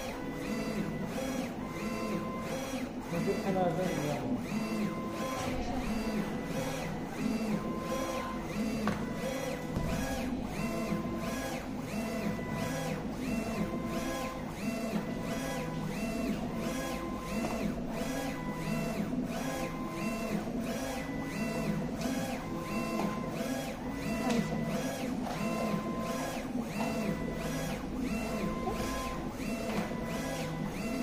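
UV flatbed printer printing, its print-head carriage shuttling back and forth across the bed in a steady rhythm, with a short motor whine that recurs on each pass.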